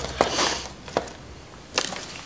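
Dry pieces of tree bark being handled and fitted into a tray form: a few light clicks and crunches, about one every second, with a brief rustle near the start.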